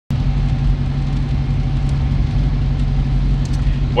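Steady low rumble of a car in motion, engine and road noise heard from inside the cabin.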